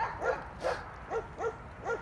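Eight-week-old German shepherd puppies yipping and whining, a quick run of short, high calls about three a second.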